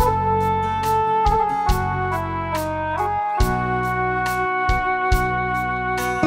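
Instrumental passage of a Sinhala pop ballad: held melody notes that step from pitch to pitch over a sustained bass, with a steady drum beat.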